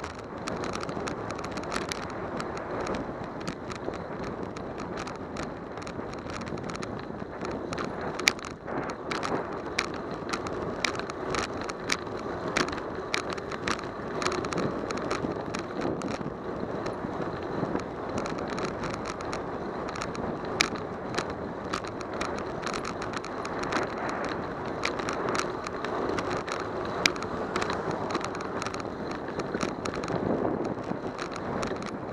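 A bicycle rolling on city pavement, recorded from a camera mounted on the bike: steady tyre and wind rumble with frequent sharp clicks and rattles as it rides over bumps.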